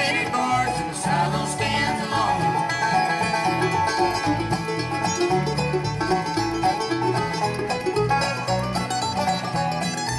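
Live bluegrass band playing an instrumental break between sung verses, with banjo picking over guitar and upright bass.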